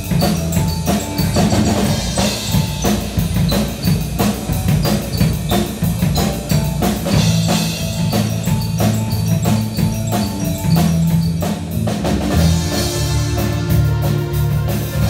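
Live rock band playing: a Roland E-A7 keyboard over a drum kit keeping a steady beat.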